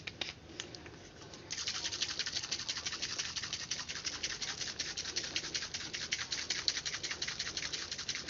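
Liquid shaking in a plastic bottle: a mix of mosquito-repellent lotion and water, shaken by hand to dissolve the lotion. After a quieter first second and a half, it becomes a rapid, even rattle and slosh of many strokes a second.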